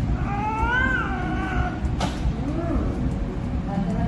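A kitten meows: one long call that rises then falls in pitch, then after a short click a second, lower call that also rises and falls.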